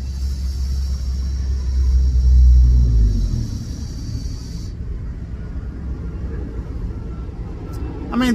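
A long draw on a box-mod vape with a tank atomizer: a steady hiss from the firing coil and the air pulled through it, cutting off suddenly after about four and a half seconds. Under it a low rumble swells and fades in the first three seconds.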